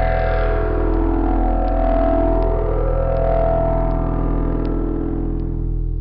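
Intro music: sustained, droning low chords held steadily.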